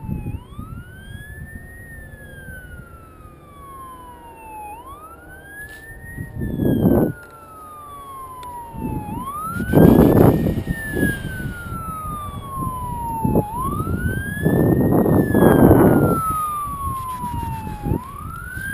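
Emergency vehicle siren wailing, each cycle rising quickly and falling slowly, repeating about every four and a half seconds. Louder bursts of rumbling noise come and go under it, the loudest about ten seconds in.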